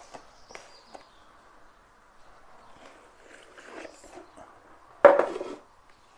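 Hands handling a cardboard watch presentation box, with faint rubbing and rustling, then a short, loud scrape about five seconds in as the lid is slid off the box.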